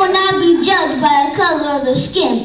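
A young boy's voice reciting a speech, with long drawn-out syllables.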